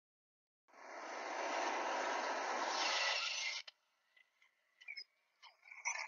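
A steady hiss lasting about three seconds that swells slightly and cuts off suddenly, followed by a few faint clicks.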